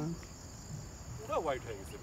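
Insects chirring steadily at one high pitch, with a brief snatch of a person's voice about halfway through.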